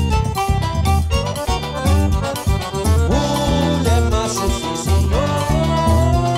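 Forró band playing an instrumental passage with no singing: a melody of held and sliding notes over a steady zabumba drum beat.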